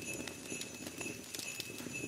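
Irregular light clicks and rustling from handling the parts of an artificial flocked Christmas tree as they are lifted out of their cardboard box and set down.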